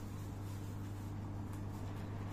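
Steady low hum under quiet room tone, with no other clear sound.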